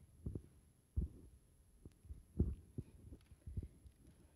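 A few faint, low thumps at irregular intervals over a quiet room background.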